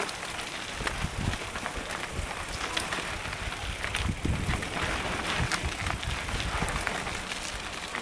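Mountain bike rolling fast down a dirt and stony singletrack: a steady crunch of tyres on loose ground, with frequent small knocks and rattles from the bike and a low rumble of wind on the microphone.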